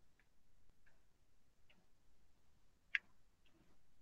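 Near silence with a few faint ticks from cord and card cover being handled while the binding is laced, and one sharper click about three seconds in.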